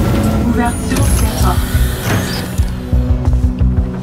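Film soundtrack of a low mechanical rumble under a music score, with a pulsing low beat coming in a little past halfway.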